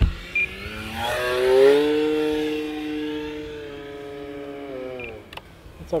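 An E-flite Commander's electric motor and propeller whine as the RC plane flies past. The pitch climbs about a second in and is loudest just before two seconds. It then holds and slowly falls as the sound fades near the end.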